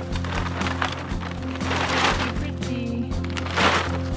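Background music with steady held tones, over which paper and plastic wrapping rustle as they are pulled off a packed dome skylight, loudest in two swells about halfway through and near the end.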